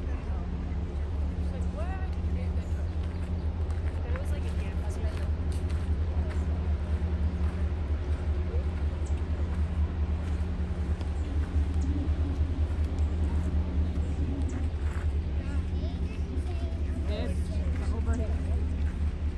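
Shuttle bus engine running with a steady low hum, with faint voices in the background.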